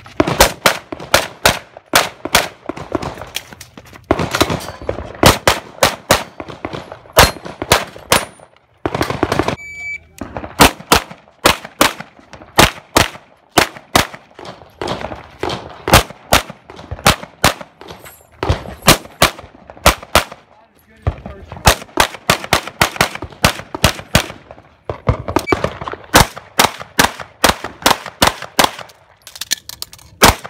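Pistol fired in rapid strings during practical-shooting (IPSC) courses of fire, several shots a second, with short pauses between strings. About ten seconds in, a short high beep, typical of a shot-timer start signal.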